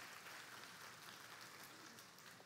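Faint audience applause, an even patter that slowly dies away.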